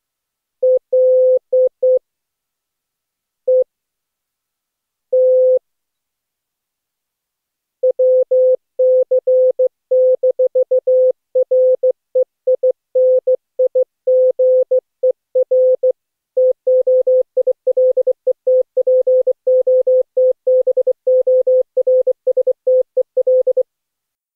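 Morse code (CW) sent as a single keyed tone at one steady pitch. It opens with a few scattered characters and runs on as a continuous fast stream of dits and dahs from about eight seconds in, stopping just before the end.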